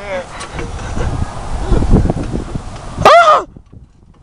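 A brief laugh, then low rumbling wind and handling noise on the microphone of a fast-moving handheld camera, then a loud, short vocal cry about three seconds in that cuts off abruptly.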